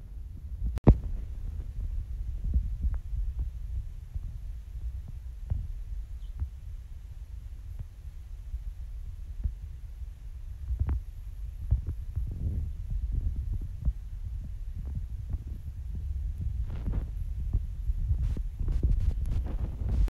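Uneven low rumble of wind buffeting a phone microphone, with a few light handling clicks.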